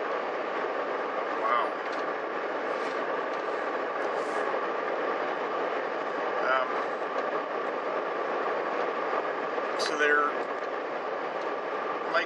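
Steady road and engine noise heard from inside a moving car's cabin, with a faint steady hum running through it. A few brief vocal sounds from the driver break in around the middle and near the end.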